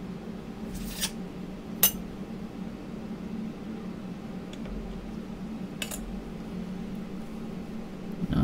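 Three light, sharp clicks of a thin metal clay blade and steel ruler against a hard work surface while a polymer clay cane is cut in half, the sharpest a little under two seconds in, over a steady low hum.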